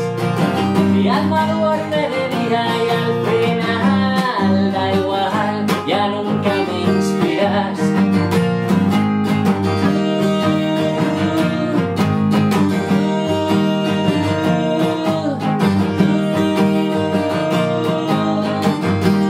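Steel-string acoustic guitar strummed with a capo on the neck, playing steady chords, with a man singing over it.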